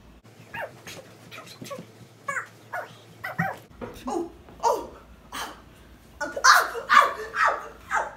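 A dog barking and yipping in a run of short calls, louder over the last two seconds.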